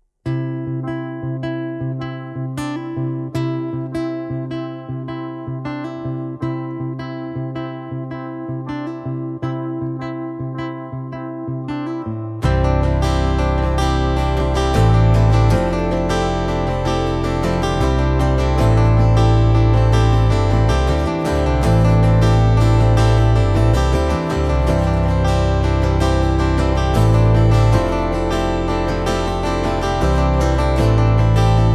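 Instrumental intro played live on acoustic guitars: a steady picked guitar pattern, joined about twelve seconds in by deep bass notes and a fuller, louder band sound with strummed guitar.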